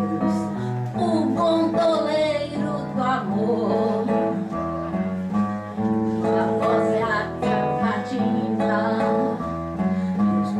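A woman singing a song into a microphone, accompanied by a strummed acoustic guitar.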